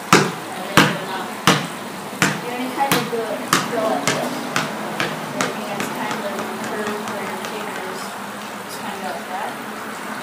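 Basketball bouncing on a concrete patio floor, dribbled by hand about every 0.7 s. About halfway through, the bounces get weaker and quicker and die out as the ball gets away and settles.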